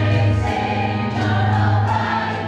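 Music: a choir singing held notes over a steady bass.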